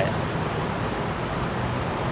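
Steady city traffic noise, an even low hum with no distinct events.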